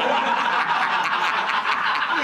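Several people laughing together at once, a dense, steady burst of group laughter.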